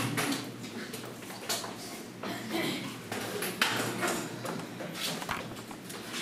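Footsteps and knocks of a metal folding chair being carried and set down on a hard floor. These are a handful of irregular sharp clunks, loudest about one and a half and three and a half seconds in.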